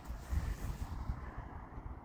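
Low, uneven rumble of wind buffeting the microphone outdoors.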